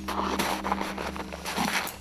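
Footsteps of leather mountain boots trudging through deep snow, over a low steady drone of background music.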